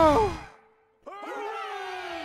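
A long wavering vocal cry fades out in the first half second. After a moment of silence, cartoon voices cheer one long, drawn-out "Hooray!" that slowly falls in pitch.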